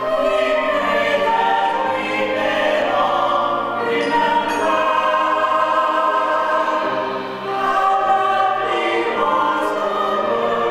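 Large mixed chorus of men and women singing long held notes in full chords that move every second or two.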